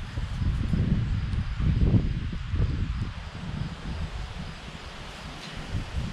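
Wind buffeting the microphone outdoors: an irregular, gusty low rumble with a faint hiss, stronger in the first half and easing after about three seconds.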